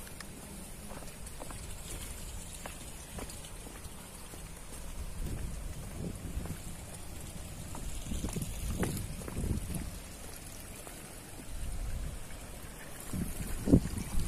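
Outdoor ambience of irregular wind rumble on the microphone, with light scattered ticks and scuffs of footsteps on a stone path.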